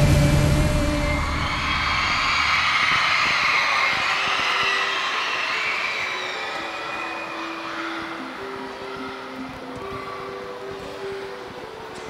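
The last chord of the backing track ends and an audience cheers and applauds, fading over several seconds. Soft held notes of music come in about halfway through.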